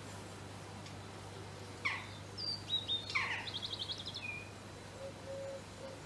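A songbird sings one short phrase about two seconds in: two sharp falling notes, clear whistled notes and a quick trill. A faint low steady hum runs underneath.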